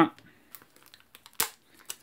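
Faint crinkling and rustling of plastic shrink-wrap and card packaging being handled as the freshly cut box is opened, with one sharp click about one and a half seconds in.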